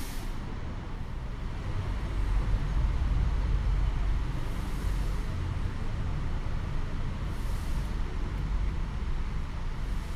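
Steady low rumble of city road traffic, swelling louder for a few seconds about two seconds in.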